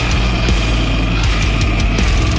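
Extreme slam deathcore playing loud and dense, with heavy distorted guitars and fast, closely spaced drum hits.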